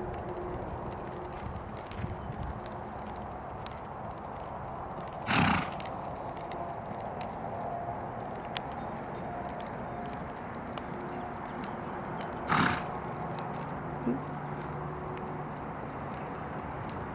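Rocky Mountain Horse gelding's hooves falling on a dirt arena in its four-beat saddle gait, soft footfalls, with two short loud bursts of noise about seven seconds apart.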